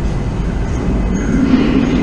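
London Underground train rumbling through the tunnel, a deep continuous roar that swells slightly about a second and a half in, with a thin high whine over it.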